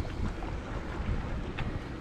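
Steady rush of wind on the microphone and water noise alongside a boat, with no distinct events.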